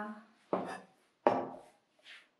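A kitchen knife chopping on a cutting board: two sharp chops about three-quarters of a second apart.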